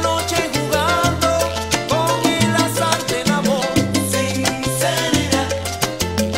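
Salsa band playing an instrumental passage, with a repeating bass line under steady percussion and melodic instrumental lines.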